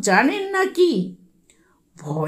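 Speech only: a narrator's voice reading a short phrase of about a second, followed by a pause.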